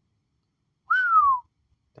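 One brief whistle by a man, about a second in, gliding down in pitch.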